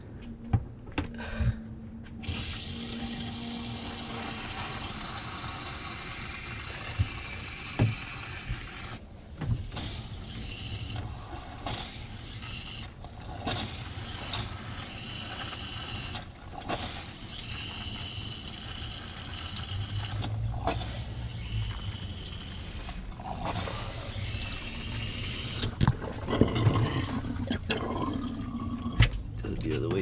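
Water being forced through a clogged RV heater core and its hoses, rushing and spluttering out through a clear drain tube as the core is flushed of debris. The flow starts about two seconds in, breaks off briefly several times, and dies away a few seconds before the end, with a few knocks of hoses being handled.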